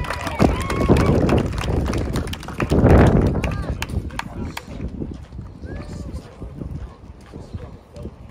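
Scattered clapping and sharp hand slaps as teammates high-five down a line, mixed with voices and chatter, with a louder burst of noise about three seconds in. The slapping thins out in the second half, leaving quieter voices.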